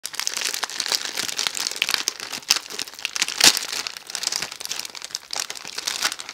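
Thin plastic bag crinkling and crackling as fingers pick and pull at it, trying to open it, in a dense run of small crackles with a sharper crack about three and a half seconds in.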